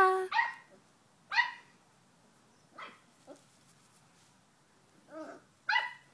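Young English springer spaniel barking at a cat in a string of short, high-pitched yaps. The three loudest come in the first second and a half, fainter ones follow around the middle, and two more come near the end.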